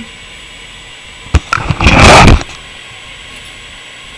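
Handling noise on the camera: a sharp click about a second and a half in, then a loud rustling scrape lasting about half a second, over a steady low hiss.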